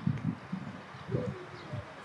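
Footsteps of someone walking on a hard outdoor surface: a series of low, dull footfalls at a walking pace.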